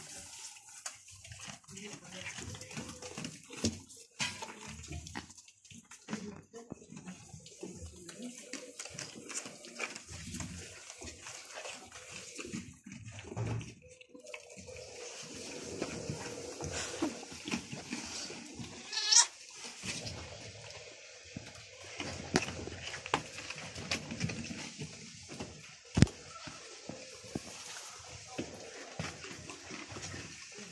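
Goats moving and feeding in a pen, with scattered knocks and rustling. About two-thirds of the way through comes one loud, wavering goat bleat, and a sharp knock follows some seconds later.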